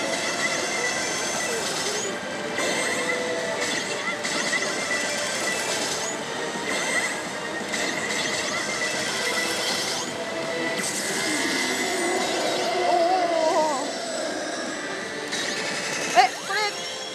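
Music and sound effects from a Daito Giken Hihouden ~Densetsu e no Michi~ pachislot machine in its bonus run, over the dense, steady din of a pachinko parlour.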